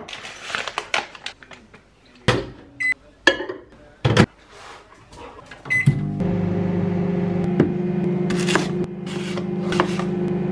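Knocks and clatter of kitchen handling, two short beeps as a Daewoo microwave oven's buttons are pressed, then the steady hum of the microwave running from about six seconds in, with a single knock partway through.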